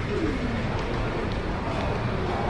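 Steady background hubbub of an open-sided airport terminal hall, with a brief falling pitched call near the start.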